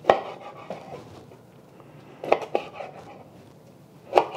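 Chef's knife cutting through raw beef and knocking down onto a cutting board: one sharp knock at the start, then two more close together about two and a half seconds in.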